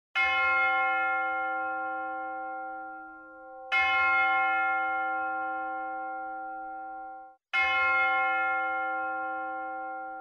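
Large swinging church bell struck three times, about three and a half to four seconds apart. Each strike rings on with a long, slowly fading hum. The ringing of the second strike cuts off suddenly just before the third.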